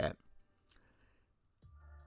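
A pause in a man's podcast speech: the end of a word, a few faint clicks, then a low steady hum comes in near the end, just before he speaks again.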